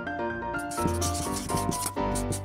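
Marker scratching across paper in a run of short strokes, over background music.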